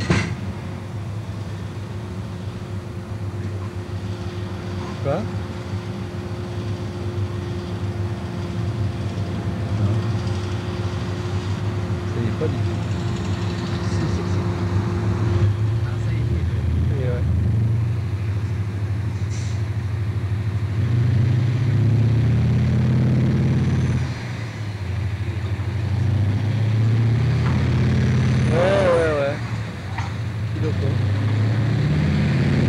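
Diesel engine of a loaded 150-tonne mining haul truck running. It pulls harder from about twenty seconds in, with a brief dip just after, as the truck struggles to move off through mud.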